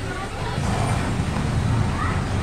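Car engine running with a steady low rumble.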